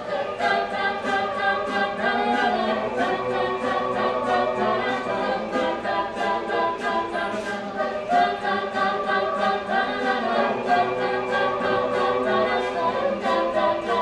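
Mixed-voice a cappella group singing in close harmony over a steady beat of vocal percussion.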